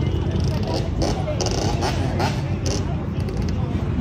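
Motorcycle engines running, a steady low drone, with faint voices of people around.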